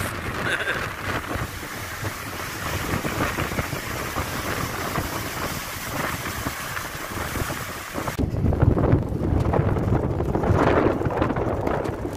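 Rough storm surf breaking over shoreline rocks, heard through wind noise on the microphone. About eight seconds in, the sound turns into strong wind buffeting the microphone with a heavy low rumble.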